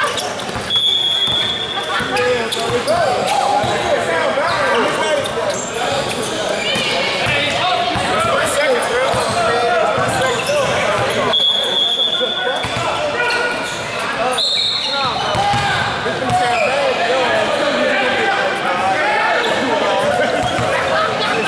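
Basketball game sounds in an echoing gymnasium: a ball bouncing on the hardwood floor amid players' and spectators' voices calling out. Three brief steady high-pitched tones cut through, about a second in, past the middle and shortly after.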